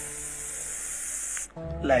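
A long, steady hiss like an aerosol insecticide spray, cutting off suddenly about a second and a half in: a comic imitation of a silent fart escaping.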